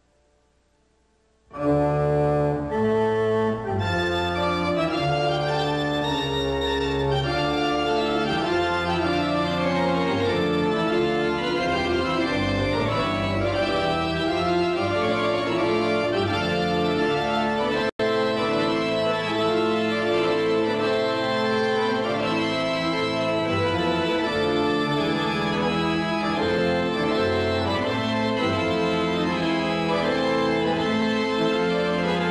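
Pipe organ playing full, held chords with moving lines, coming in suddenly about a second and a half in after near silence. The sound drops out for a split second just past the middle.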